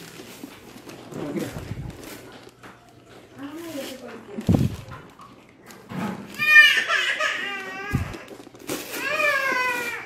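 Family voices in a small room: no clear words at first, then a high, sing-song voice rising and falling from about six and a half seconds to the end, alongside child's babble. A few dull thumps and short rustles come from the wrapped present being handled.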